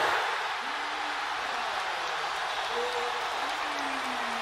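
Basketball arena crowd cheering and clapping as a home three-pointer drops, a dense, steady wash of noise that begins at once, with a few single voices shouting through it.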